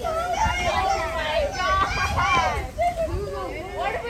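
Several children talking and calling out over one another at once, their voices high and overlapping, loudest in the middle.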